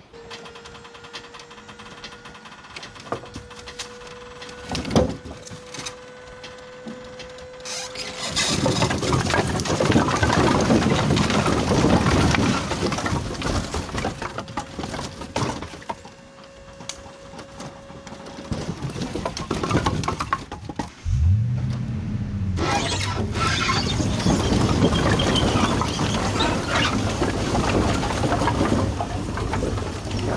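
Dump trailer's hydraulic pump whining steadily as the bed lifts, with a few knocks. From about eight seconds in, a load of split firewood slides and tumbles out of the tipped box in a long clattering rush; a lower hum starts about two-thirds of the way through and more wood clatters down.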